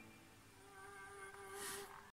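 Faint tail of the background music fading out, leaving a thin held note, with a brief soft hiss near the end.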